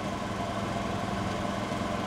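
A steady low mechanical hum in the background, like an engine idling, unchanging through a pause in the speech.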